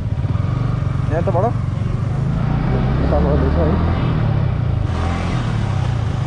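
Motorcycle engine running at low revs as the bike moves off and rides slowly, heard from the rider's seat, with a hiss joining about five seconds in.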